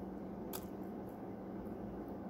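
Faint chewing of a mouthful of raw cornstarch over a steady low hum, with one sharp click about half a second in.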